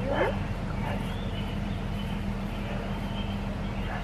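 Australian Shepherd puppy giving a short high yip just after the start, then a couple of fainter whines, over a steady low hum.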